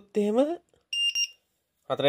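LiPo cell voltage checker's buzzer giving one short, high beep about a second in, as the checker powers up on being plugged into the battery's balance lead.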